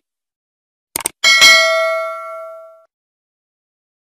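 Subscribe-button animation sound effects: a quick double mouse click about a second in, then a bright bell ding that rings out and fades over about a second and a half.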